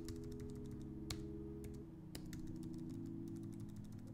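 Computer keyboard keys being tapped: a run of light clicks with a few sharper presses standing out, about half a second to a second apart.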